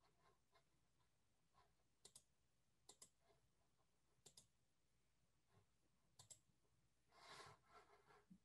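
Faint, scattered clicks of a computer mouse, several in quick pairs like double-clicks, about a second or so apart. A brief soft rustle near the end.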